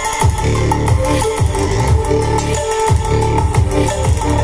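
Bass-heavy electronic dance music played loud through a D10 OK AC/DC Bluetooth amplifier board into a subwoofer and speakers, run from a 12 V motorcycle battery. The bass falls in repeated sweeps about twice a second.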